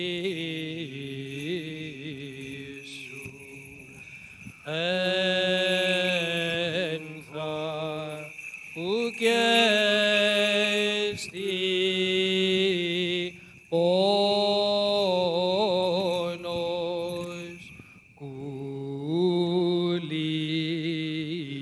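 Solo Byzantine liturgical chant: one voice singing slow, ornamented phrases of long held notes, with short breaks for breath between them.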